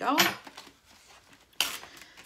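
Paper packaging being slit open with a letter opener, with faint crinkling and one short, sharp rip about one and a half seconds in.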